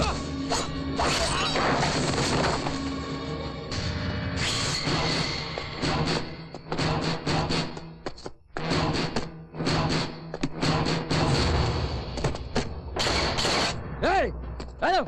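Action-film fight soundtrack: a background score with a steady held drone, over dubbed-in impact effects of blows, thuds and crashes. From about six seconds in, the hits come in a quick, dense run.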